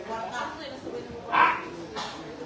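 Background voices, with one short, loud, bark-like yelp about one and a half seconds in.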